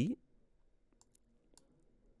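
A few faint computer mouse clicks, about four spread over the first second and a half, against near silence, with the end of a spoken word at the very start.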